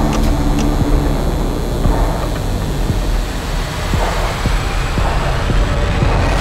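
Cinematic sound-design rumble: a loud, steady low drone with a few faint knocks scattered through it.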